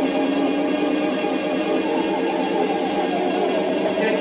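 Background workout music in a held, droning passage with sustained notes and no clear beat.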